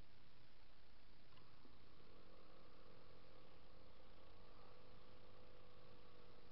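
Yamaha Zuma 50F scooter's small four-stroke engine running faintly and steadily from about two seconds in, picking up slightly in pitch about four seconds in, on a nearly empty tank.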